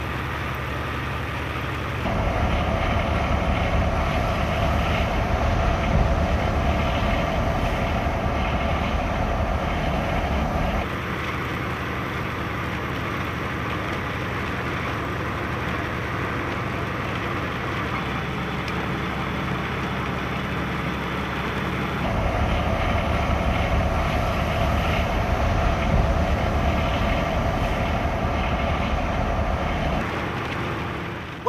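Steady drone of a tractor-trailer's engine and tyres heard from inside the cab. It gets suddenly louder about two seconds in, drops back at about eleven seconds and rises again at about twenty-two.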